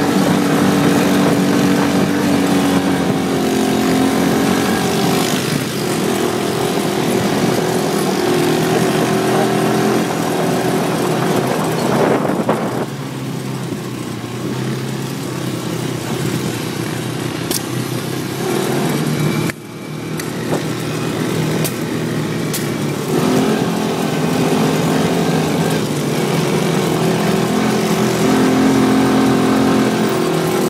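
Onboard sound of an ATV engine running while driving, its pitch shifting with the throttle. About twelve seconds in it eases off and runs quieter, dips briefly, then picks up again after about twenty-three seconds.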